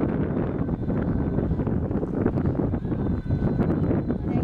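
Wind buffeting the camera microphone: a steady, rumbling noise without breaks.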